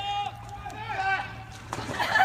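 People's voices calling out and talking, starting with one high, held call. A single sharp knock comes near the end.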